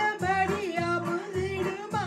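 A woman singing a Tamil song to an electronic keyboard accompaniment, holding wavering notes over a steady bass beat of about two pulses a second.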